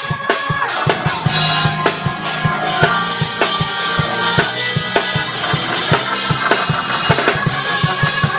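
Live church band playing an up-tempo gospel praise break: a drum kit keeps a fast, steady beat of about four hits a second under held chords.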